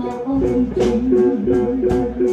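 Blues band playing live: an electric guitar plays a repeated lick with a wavering, bending note under it, over drum hits.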